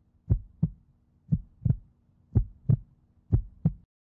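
Heartbeat sound effect: pairs of deep lub-dub thumps, about one pair a second, over a faint steady hum. It stops just before the end.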